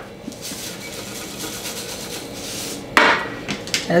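Gluten-free breadcrumbs shaken from a canister onto raw chicken, a faint dry hiss lasting a couple of seconds. About three seconds in there is a sharp knock as the canister is set down on the glass tabletop.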